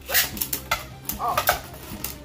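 Two Beyblade Burst spinning tops, Betromoth B6 and Colossal Helios, clashing in a plastic stadium. Several sharp plastic clacks, about three hits, as one bounces on top of the other.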